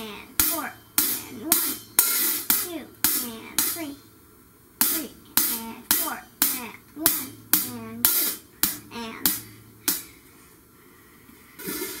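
Closed hi-hat struck with a single drumstick in a steady beat of about two to three strokes a second, with a voice counting along between the strokes. The playing breaks off briefly about four seconds in and stops for good about ten seconds in.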